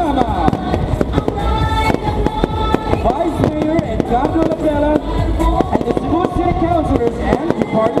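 Aerial fireworks bursting in quick succession, a continuous run of bangs and crackles, over loud music with voices.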